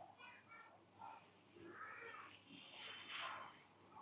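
Near silence, with a few faint animal calls in the background.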